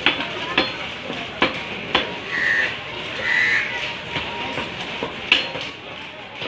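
Butcher's cleaver chopping beef on a wooden log chopping block: about five sharp blows at uneven intervals, with a gap in the middle of the run. Two brief high-pitched sounds come during the gap, over a steady background noise.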